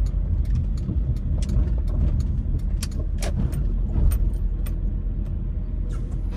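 Low steady rumble of a car driving, heard from inside the cabin, with a run of small sharp clicks and rattles, roughly three a second.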